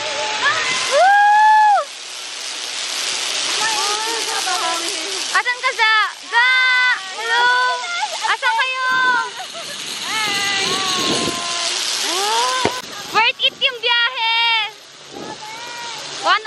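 A woman's high, drawn-out squeals and excited exclamations on a sky-cycle ride along a cable, over a rushing hiss that swells and fades a few times.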